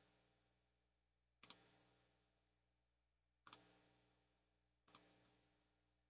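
Three faint computer mouse clicks, each a quick double tick, spaced a second and a half to two seconds apart over near silence.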